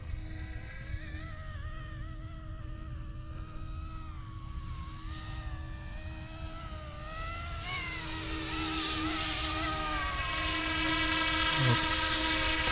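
Yuxiang F09-S RC helicopter flying: the electric motor and rotor whine, wavering in pitch over a low wind rumble, growing louder through the second half as it comes closer.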